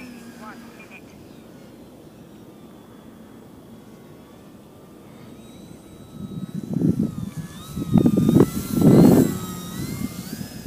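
Faint whine of the Durafly Tundra's electric motor and propeller, its pitch wavering with the throttle. From about six seconds in, gusts of wind buffet the microphone, loudest near the end.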